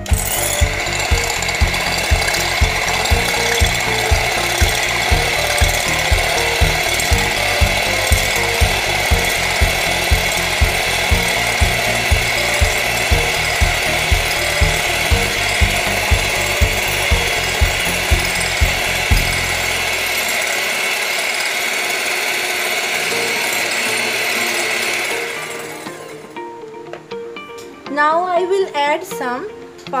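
Electric hand mixer running steadily with a whine as its twin beaters whip an egg white in a glass bowl at low to medium speed, stopping about 25 seconds in. A regular low thump, about twice a second, runs under it for roughly the first 19 seconds.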